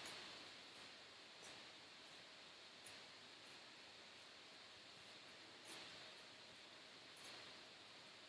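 Near silence: faint room hiss with a few faint, soft taps as hands and feet shift on a rubber floor mat during plank walks.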